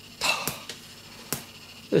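A short breathy exhale, then two sharp clicks a little under a second apart.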